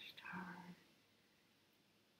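A woman's soft, murmured speech for under a second, then near silence: room tone.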